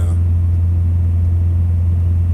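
Semi-truck diesel engine idling, heard from inside the cab as a steady low hum.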